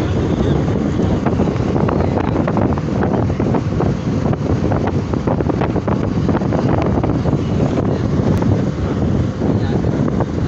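Wind rushing in through the open window of a moving bus and buffeting the microphone, over the bus's steady road and engine noise.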